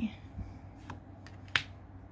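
An oracle card being handled by hand: a faint tick a little under a second in, then one sharp click about a second and a half in.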